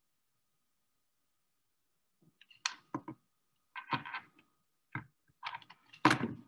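Irregular clicks, knocks and rustles picked up by a video-call microphone, starting about two seconds in.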